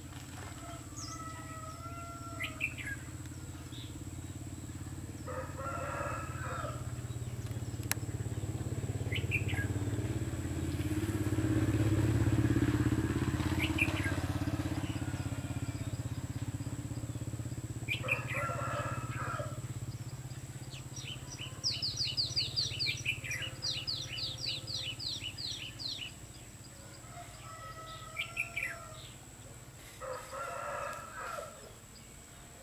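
Red-whiskered bulbuls calling in short bursts every few seconds, while a low rumble swells and fades around the middle. Later a quick series of high, repeated notes runs for several seconds.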